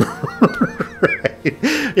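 A man laughing in a run of short, breathy bursts.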